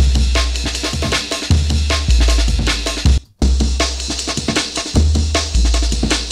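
Chopped breakbeat drum loop in a jungle/drum and bass style, with deep sub-bass notes underneath, played back from a sampler: it runs about three seconds, stops briefly, then plays again from the top.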